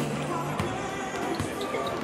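A basketball bouncing a few times on a hardwood court, under a gospel song whose held note ends about half a second in.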